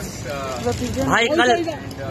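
Voices talking and calling out, with a louder voice about a second in, over a steady background of street noise.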